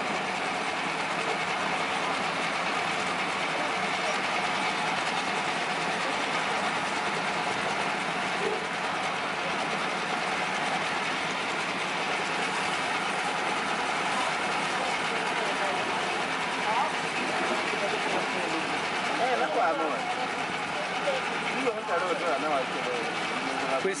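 A steady, loud mechanical din, like a running engine, with indistinct voices coming and going over it, more of them in the last few seconds.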